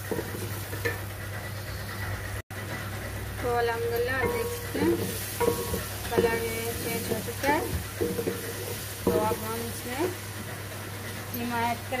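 Ground onion, garlic and tomato paste frying in oil in an aluminium pot, sizzling while it is stirred and scraped with a spatula. The sound drops out for an instant a couple of seconds in.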